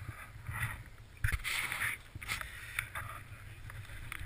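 Scuffing and rattling of mountain bikes and feet being moved over a stony trail, with a sharp knock a little over a second in followed by a short scrape.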